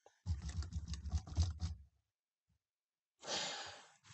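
A quick run of computer keyboard keystrokes, a password being typed, lasting about a second and a half. A short breath near the microphone follows near the end.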